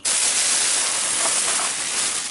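Red plastic shopping bag rustling right up against the microphone as a hand rummages inside it, a loud, dense, steady crinkling hiss that starts abruptly.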